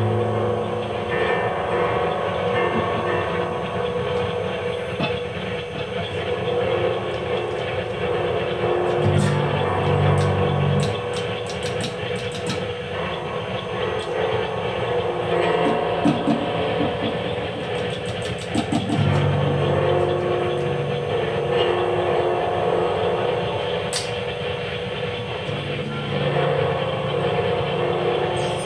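Free-improvised industrial noise music: a dense, steady wash of guitar and electronic and sampled noise. Held low notes come in three times, and there are a couple of runs of rapid ticking.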